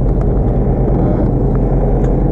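An engine running steadily and loudly aboard a bowfishing boat, a constant low drone.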